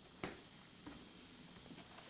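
Near-quiet room with a sharp tap about a quarter second in and a softer tap near the middle: a crawling baby's hands patting on a tile floor.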